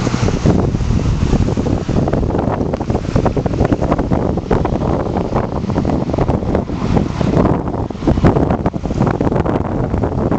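Wind buffeting the microphone of a handheld camera: a loud, uneven rumble that keeps surging and dropping.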